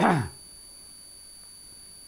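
A man's single short cough, then the quiet of a small room with a faint steady high-pitched electronic whine.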